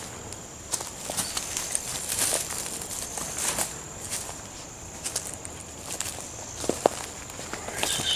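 Footsteps crunching through dry leaf litter and twigs on a forest floor, irregular steps roughly one or two a second, with a sharper crack of a twig near the end.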